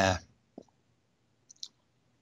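A man's voice over a video call finishing a word, then a pause of gated silence broken by a few faint short clicks about a second and a half in.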